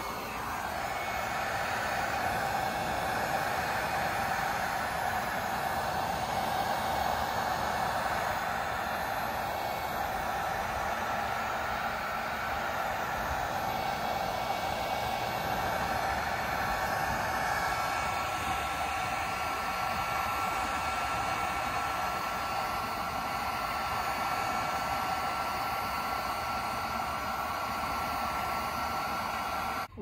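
Electric heat gun running steadily, held close to a sun-faded plastic fairing: an even rush of blown air with a faint whine.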